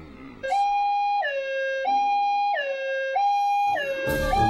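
Two-tone hi-lo siren alternating between a higher and a lower note, each held about two-thirds of a second, starting about half a second in.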